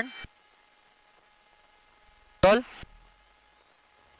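Near-silent cockpit intercom audio with no engine sound coming through, broken by one short spoken utterance about two and a half seconds in.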